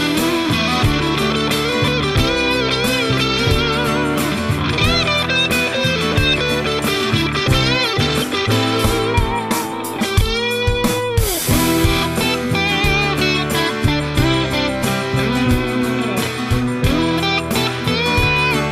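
Instrumental break of a pop song: a lead electric guitar plays bent notes with vibrato over drums and bass, with a falling slide about ten seconds in.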